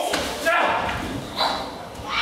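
A sudden thud about half a second in, as a body hits a stage floor during a staged knife attack, mixed with short vocal cries, then a second sharp cry near the end.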